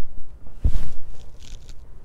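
Handling noise on a clip-on microphone as she moves her hands and arms: a low bump and rustle about two-thirds of a second in, then brief soft rubbing.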